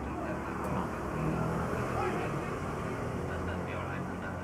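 Steady low background rumble with a faint haze of noise, swelling slightly about a second in, and faint indistinct voices in the background.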